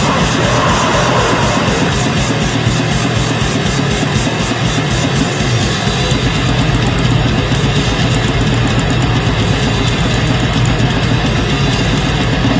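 Extreme metal music: heavily distorted guitars over rapid, relentless drumming, with the rhythm pattern changing about halfway through.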